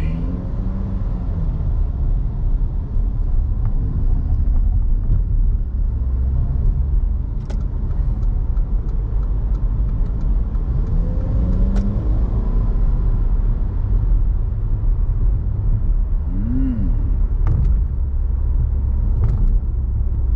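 Car being driven on a city road: a steady, loud low rumble of engine and tyre noise with a few faint clicks.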